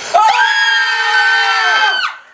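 Two men and a woman screaming together in one long, loud scream held at several different pitches for nearly two seconds, breaking off sharply near the end.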